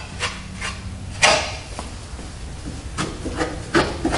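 Brief rubbing and rustling noises from hands and clothing against a car body, several short strokes, the loudest about a second in and two more near the end.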